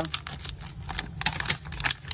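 A plastic packaging bag crinkling in quick, irregular crackles as it is pulled open by hand to take out a new pressure-cooker regulator valve. The loudest crackles come in the second half.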